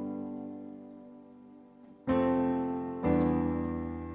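Acoustic grand piano sound played from a MIDI keyboard: a G major chord rings and fades, then new chords are struck about two seconds and three seconds in, the second an E minor seventh, each left to ring and decay.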